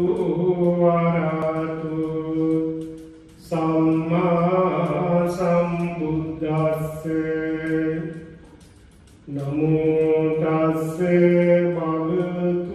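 A Buddhist monk chanting into a microphone: one male voice holding long, steady notes. The chant breaks twice, briefly about three seconds in and for over a second around eight seconds in.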